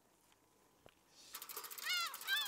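Quiet at first, then a hiss with fast fine ticking fades in, and near the end short cat-like mewing calls begin, each rising and falling in pitch: gulls calling.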